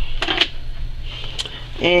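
A brief rustle of plastic-wrapped craft packs being handled, about a quarter second in, over a steady low hum.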